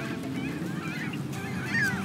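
Gull calling: a string of short cries, with a longer falling cry near the end.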